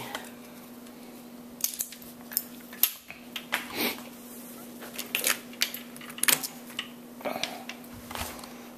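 Scattered metallic clinks and knocks as a compression tester's hose and fitting are handled at a spark plug hole in a Chrysler Crown flathead six cylinder head, over a steady low hum.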